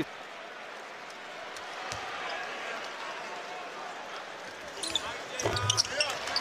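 Basketball arena crowd murmuring steadily during a free throw, with a faint knock of the ball on the hardwood about two seconds in. Near the end comes a rush of short squeaks and knocks, with rising voices.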